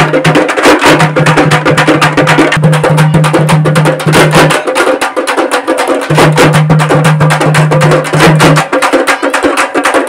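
Rapid, continuous beating of hand-held metal gongs struck with sticks, with other ritual percussion, loud and dense. A low steady tone runs underneath and drops out twice, about halfway through and near the end.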